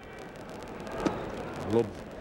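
Steady ballpark crowd murmur with one sharp pop about a second in, a pitched baseball smacking into the catcher's mitt. A short voice comes near the end.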